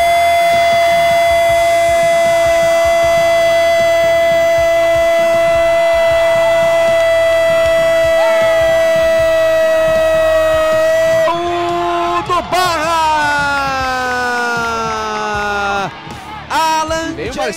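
Football commentator's long goal cry: one vowel held at a steady pitch for about eleven seconds, then wavering and sliding down in pitch before it breaks off near the end.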